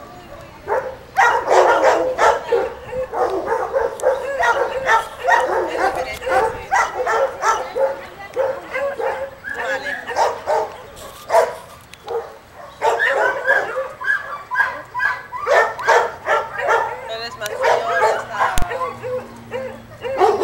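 Dogs barking in quick, continuous runs of short barks and yips. There is a brief lull about halfway through, and then the barking starts again.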